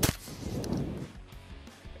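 A single shot from a Benelli Nova 12-gauge pump shotgun firing a slug: one sharp crack, then a short, low rumbling echo that dies away within about a second.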